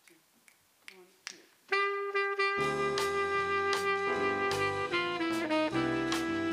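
Small jazz combo beginning a tune: a few soft clicks about half a second apart, then a saxophone enters on a long held note, and bass, drums and the rest of the band come in about a second later.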